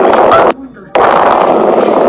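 Loud, dense jumble of voice-like sound that cuts out suddenly about half a second in, drops away for under half a second, then resumes just as loud.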